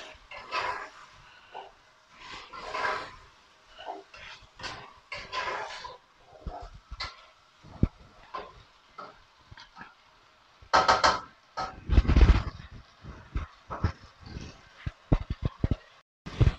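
Spatula stirring and scraping chickpeas frying in a pot, in irregular scrapes and knocks, with a louder run of scraping about two-thirds of the way in.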